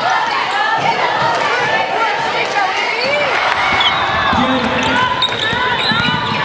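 A basketball being dribbled on a hardwood gym floor, with many short sneaker squeaks and the chatter of a crowd in a large gym.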